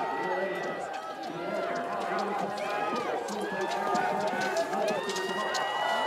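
Several voices calling and shouting over one another, with scattered sharp clicks of ski poles and skis on snow; one long drawn-out shout near the end.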